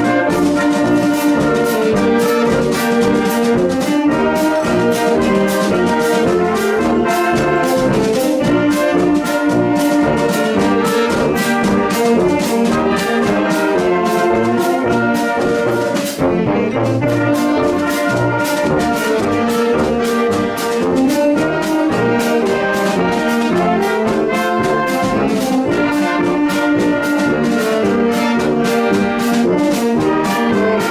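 Marching band of saxophones, trumpets, sousaphone and drums playing a tune, with a steady drum beat under the horns.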